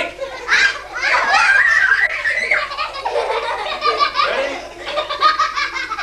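Several young children laughing and squealing in high voices, with a long excited squeal about a second in.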